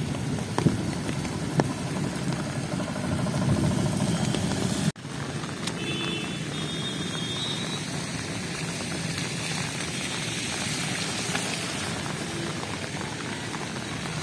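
Rain falling on a flooded road, with passing traffic rumbling through the water in the first five seconds. The sound cuts off abruptly about five seconds in and is followed by a steadier rain hiss.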